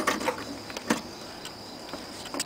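A few light clicks and taps from handling copper magnet wire at a hand-cranked coil winder, the sharpest just before one second in, over a faint steady high-pitched whine.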